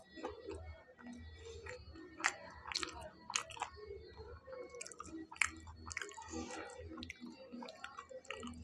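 A man chewing fried pakoras, with irregular crisp crunches, a few of them louder than the rest.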